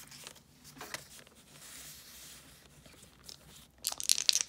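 Paper player cards being handled and laid down on a notebook page: faint rustling and light taps, with a few sharp clicks near the end.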